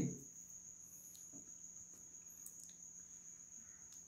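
Near silence: faint room tone with a thin, steady high-pitched whine running throughout.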